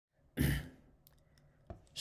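A man's short breath into the microphone, like a sigh, about half a second in, then a faint click near the end.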